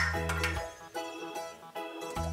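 Background music: a light, bouncy tune over repeating bass notes.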